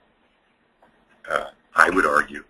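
A man's voice: a pause, then two short spoken bursts beginning a little over a second in.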